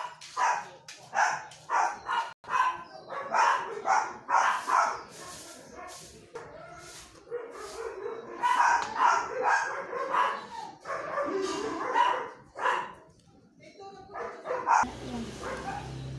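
A dog barking in short, sharp yaps, many times over, pausing briefly near the end.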